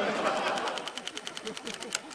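Electric printing calculator running its print mechanism: a rapid, even clatter of ticks as it prints onto its paper roll.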